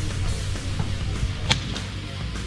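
Background music with guitar, and a single sharp crack about one and a half seconds in: a shot from a suppressed AR-style rifle.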